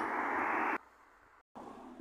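Steady outdoor background rush with no distinct events, cutting off abruptly under a second in and leaving near silence.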